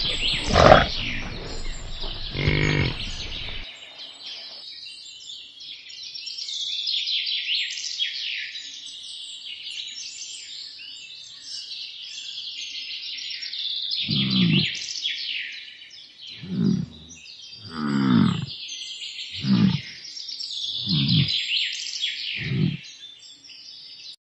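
Deep bovine calls over steady birdsong: two lowing calls in the first few seconds, then, after a stretch of birdsong alone, six short deep bellows from bison, spaced about one and a half seconds apart.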